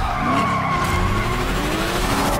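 A long, high-pitched screech like skidding tyres, its tone sagging slightly, over a low rumble.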